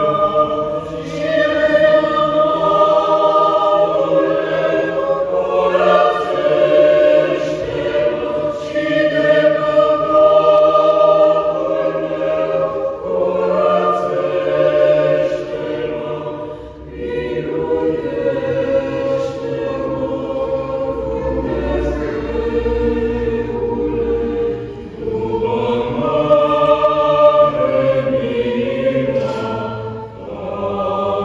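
Mixed choir of women's and men's voices singing a sacred piece a cappella in a large church, in long held phrases with short breaks between them.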